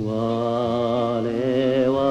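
A singer holding one long sung note with vibrato over orchestral accompaniment, in a 1950s Japanese popular song. The note starts a new phrase just after a brief drop in the music.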